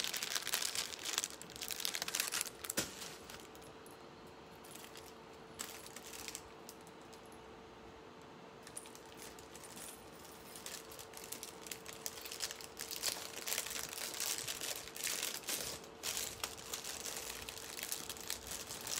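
A clear plastic jewelry bag crinkling as metal costume jewelry (necklace, bracelet, ring) is worked into it, with small metallic clinks. The handling is busy at first, goes quieter for several seconds in the middle, then picks up again near the end.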